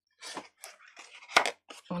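A piece of card being picked up and handled: scuffing and rustling, with one sharp tap about one and a half seconds in.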